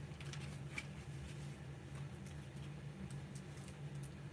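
Glossy brochure and magazine pages handled and turned by hand: faint, scattered paper rustles and taps over a steady low hum.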